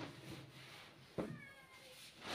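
Rustling of clothing and a bag as the next garment is pulled out, with a sharp click about a second in followed by a short cry that falls slightly in pitch.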